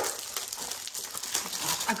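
Clear plastic wrapping crinkling and rustling as it is handled and pulled off a plastic storage tray.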